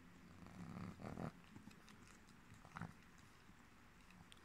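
Near silence with faint licking and mouth sounds from a sleeping Boston terrier, its tongue working at a finger: once about a second in and briefly again near three seconds.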